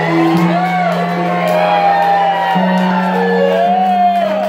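Keyboard playing slow sustained chords, with the bass note changing twice. Audience members whoop and shout over it.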